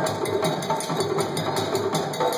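Ensemble of African hand drums, djembes among them, playing a fast, steady rhythm of several strokes a second.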